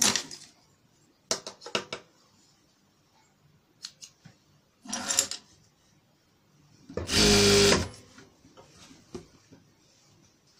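Electric sewing machine stitching in short bursts. The longest and loudest run lasts about a second, about seven seconds in, with a shorter run around five seconds in. Brief clicks and knocks come in between.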